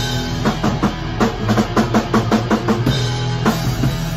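Thrash band playing live: a drum kit run of fast, evenly spaced hits, about five a second, over a held electric bass and guitar note. The cymbals and full band come back in near the end.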